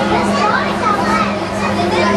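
Indistinct crowd chatter with children's voices, over a steady low hum.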